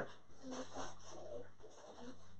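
Faint breathing at the microphone during a pause in speech, over a low steady hum.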